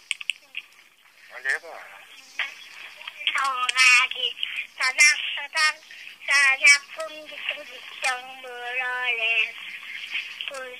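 A young child's high voice singing short phrases, several of them on long held notes, the sound thin and cut off at the top as over a phone line.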